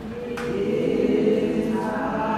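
Voices singing slow, sustained notes together, a choir-like sound; a higher voice joins near the end.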